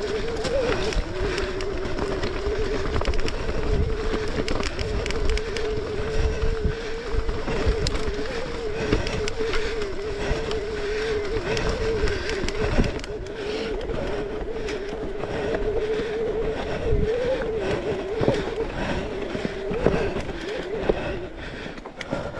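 Mountain bike rolling along at speed: a steady hum that wavers slightly in pitch, over a rumbling rolling noise and scattered knocks from the trail.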